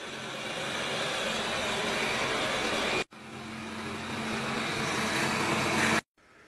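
Robot vacuum cleaner running on a hard floor: steady suction-fan noise over a low hum, growing louder, with a short break about halfway through before it carries on.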